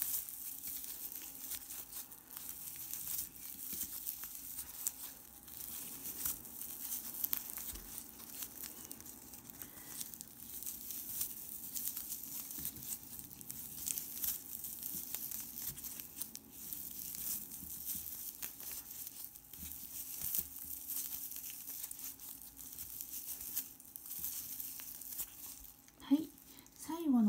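Rustling and crinkling of glossy cord yarn pulled through stitches with a metal crochet hook, single crochet stitches worked one after another. It goes on steadily with many small scratchy ticks.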